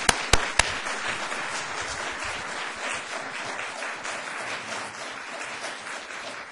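Audience applauding, opened by a few loud single hand claps close to the microphone, the applause thinning out near the end.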